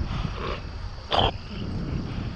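Wind buffeting the microphone and tyre rumble from a bicycle rolling along a paved trail, with one short, loud sound about a second in.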